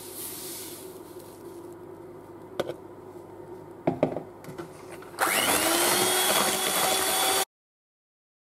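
Electric hand mixer switched on about five seconds in, its motor rising in pitch as it comes up to speed and then running steadily in the eggs and sugar; the sound cuts off suddenly after about two seconds. Before it, only a few light knocks.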